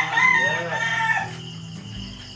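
A rooster crowing once, a wavering call of about a second and a half, over a song playing underneath.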